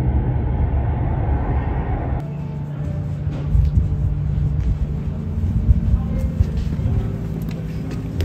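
Low rumble of a car's interior heard from the back seat. About two seconds in it cuts off abruptly to a lighter background with scattered clicks.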